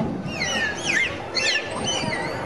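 Dolphins whistling: several squeaky whistles that sweep up and down in pitch, overlapping, with a thin steady high tone near the end, over the murmur of a crowd.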